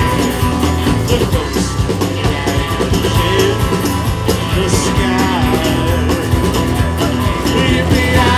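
Live country-rock band playing an instrumental stretch with drums, electric and acoustic guitars and a shaken tambourine; singing comes back in near the end.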